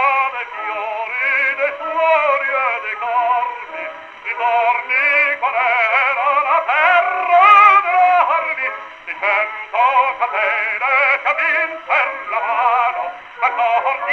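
Operatic tenor singing with vibrato over musical accompaniment, an acoustic 1918 recording played from a 78 rpm shellac record on a wind-up Victor gramophone. The sound has no bass and no highs, the narrow range of an early acoustic disc.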